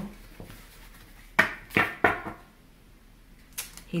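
Oracle card decks being handled and set down on the table: three sharp knocks about a second and a half to two seconds in, and a fainter one near the end.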